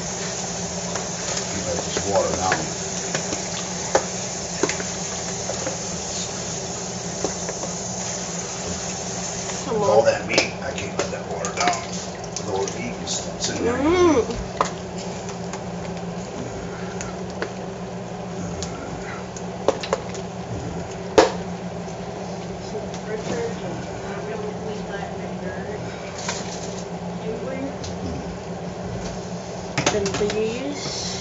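Kitchen tap water running into a stainless steel sink while meat is rinsed, stopping about ten seconds in. After it come scattered clicks and knocks of handling at the counter.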